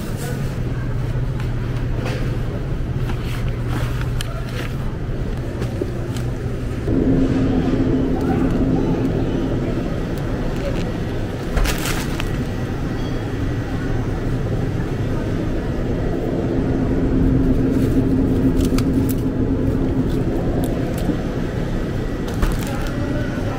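Supermarket background noise: a steady low rumble and hum, with indistinct voices in the background. The hum shifts to a higher pitch about a third of the way in, and there are a few light clicks.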